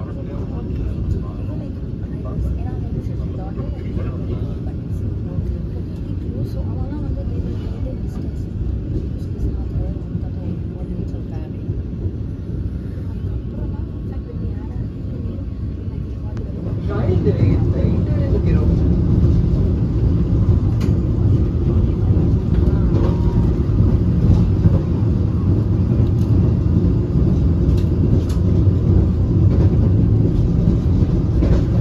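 Vande Bharat Express electric trainset running at speed, heard inside the coach: a steady low rumble of wheels on rail, growing louder a little past halfway through.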